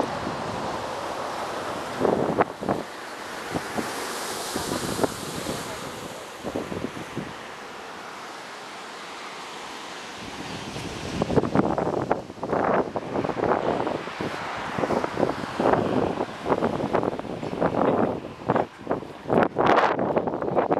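Wind blowing across the microphone over a steady rush of ocean surf. From about halfway through, the wind comes in rapid, irregular gusts that buffet the microphone.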